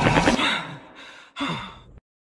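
Electronic music dying away, then about a second and a half in a short, breathy vocal gasp that falls in pitch and is cut off suddenly near the end.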